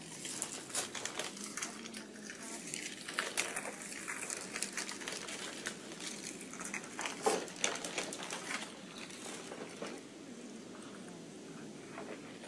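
Rustling and crinkling of paper and plastic with scattered light clicks and clatter of utensils and plates, as people eat at tables in a small room. The noises are busiest in the first nine seconds and thin out near the end.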